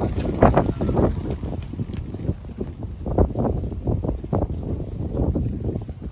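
Wind buffeting the camera microphone: a low, uneven rumble that drops away sharply at the end.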